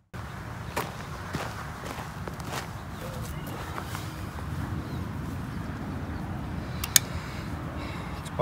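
Footsteps and rustling on dry, leaf-littered ground as a person walks up and crouches beside a carcass, with a few sharp clicks and knocks, the sharpest about seven seconds in. A steady low background noise runs under it.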